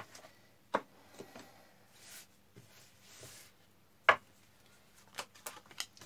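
Tarot cards being handled and laid on a wooden tabletop: a few sharp single taps, the loudest about four seconds in, then a quick run of lighter clicks near the end as a card is drawn and set down.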